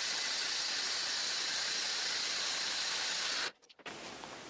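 Handheld circular saw cutting a board along a straight-edge guide, heard as a steady, thin hiss that cuts off abruptly about three and a half seconds in.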